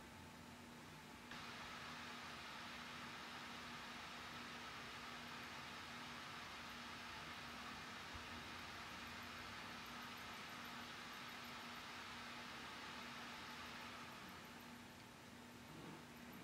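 Faint steady whirring hiss of a laptop booting. It steps up slightly a little over a second in and eases off near the end, over a faint low steady hum.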